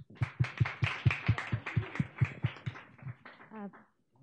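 A small audience applauding, with many quick claps that thin out and stop near the end.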